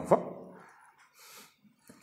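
A man's voice trailing off at the end of a phrase, then a pause of near silence with faint room noise and a soft click shortly before the end.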